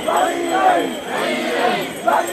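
Large crowd of mikoshi bearers chanting together, many voices shouting a repeated rhythmic call as they carry the portable shrine.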